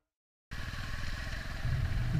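Royal Enfield Himalayan's single-cylinder engine running as the motorcycle rides along, the sound cutting in suddenly about half a second in after a moment of silence.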